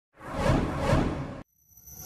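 Channel logo intro sound effect: a whoosh that swells twice and cuts off suddenly about one and a half seconds in, followed by a rising ringing tone building near the end as the logo appears.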